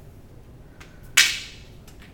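A single quick stroke of chalk on a blackboard: a sharp scrape about a second in that fades within about a third of a second, with a few faint chalk ticks around it.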